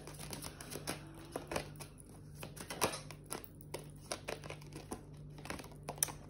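Tarot cards being shuffled and handled: soft, irregular clicks and flicks of card stock, quiet, over a faint steady hum.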